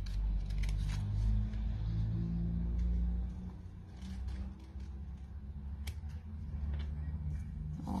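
Scissors snipping paper in short, scattered cuts while a paper template is trimmed, over a low rumble that fades out about three and a half seconds in.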